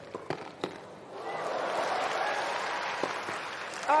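Tennis rally on a hard court: a few sharp clicks of ball strikes and footfalls, then from about a second in the crowd's noise swells in excitement, with one more sharp ball strike near the end as the point is won.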